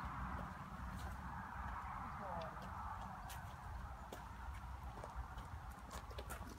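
A horse shifting and stepping about on gravel, a few soft hoof knocks over a steady low outdoor rumble.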